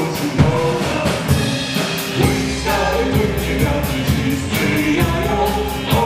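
A live band playing a song with a steady drum-kit beat, electric guitar and keyboard, and a sung vocal line over the top.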